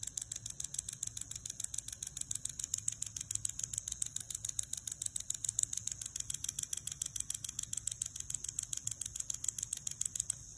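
Cordless endodontic motor with a contra-angle handpiece driving a rotary file in forward reciprocating mode (150° forward, 30° back): a high whine that pulses rapidly and evenly as the file switches direction. It cuts off just after the end.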